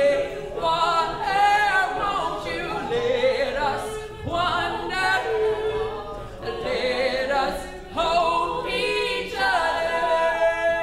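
Mixed-voice a cappella group singing in close harmony under a male lead voice, in phrases that swell and break off every second or two.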